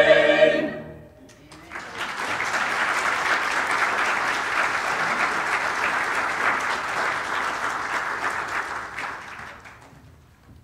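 A church choir's final sung chord cuts off within the first second. Then the congregation applauds for about eight seconds, fading out near the end.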